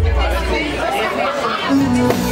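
Live band between songs: a low bass note held and fading while voices talk over it. Near the end a new instrument note comes in as the band starts up again.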